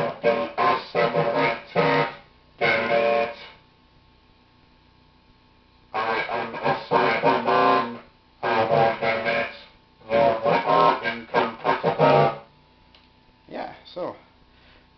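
A man's voice fed through a homemade two-transformer, four-diode ring modulator driven by an XR2206 sine wave generator, turning his speech into a Cyberman-style robot voice. It comes in several spoken phrases, with a pause of about two seconds a few seconds in, where only a faint steady tone is left.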